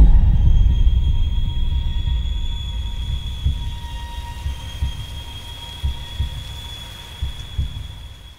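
Trailer sound design: a deep low boom at the start that fades slowly into a low rumbling drone with irregular heartbeat-like pulses, under a thin, steady high tone.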